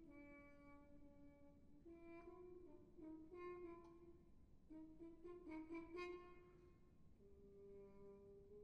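Muted trombone playing a solo line. It holds a note, moves through a run of short, shifting notes and small slides, and settles on a higher held note near the end.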